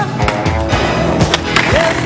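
Skateboard sounds on concrete: several sharp knocks of the board popping and landing, and wheels rolling. They are mixed with a song that has a singing voice.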